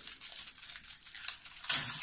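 Aluminium foil wrapper of a chocolate bar crinkling as it is unfolded by hand, in small irregular crackles that get louder near the end.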